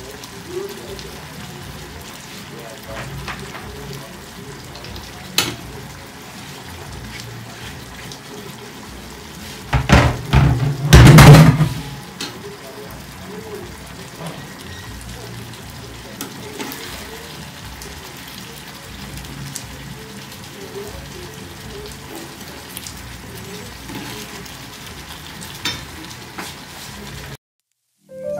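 Fish stew simmering in a frying pan on a gas stove, a steady low bubbling and sizzle. About ten to twelve seconds in comes a loud burst of clattering handling as a metal ladle is worked in the pan and chopped greens are added.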